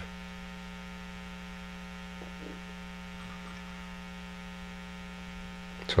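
Steady electrical mains hum with many evenly spaced overtones, at an even level throughout.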